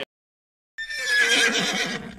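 Recorded horse whinny sound effect. It comes in just under a second in, after a sudden silence: a single high, wavering call that tails off after about a second and a half.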